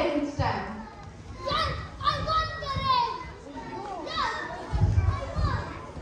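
Boys' voices shouting and calling out excitedly while they play a running game, with a few dull low thumps.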